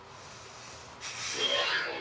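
A person sighing: one breathy exhale of just under a second, starting about a second in.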